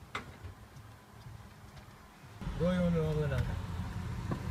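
A quiet stretch with a few faint ticks. About two and a half seconds in, the sound cuts to inside a car: low engine and road rumble, and a loud, drawn-out shouted voice falling in pitch.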